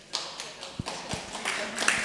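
Hand clapping starting up: a few scattered claps that quickly thicken into denser applause, growing louder.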